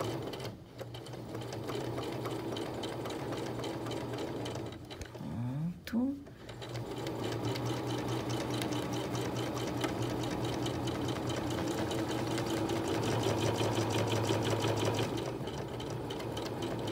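Domestic sewing machine stitching a quilt in ruler-work quilting. It stops briefly just after the start and again for a second or two around the middle, speeds back up, and runs steadily to the end.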